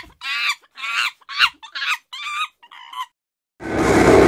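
A quick run of about seven short, high animal calls, each bending in pitch, followed near the end by a heavy metal band starting up loud with guitar and drums.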